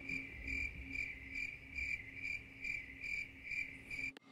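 Cricket chirping in a steady run of evenly spaced chirps, about two and a half a second. It starts and stops abruptly, as an edited-in sound effect.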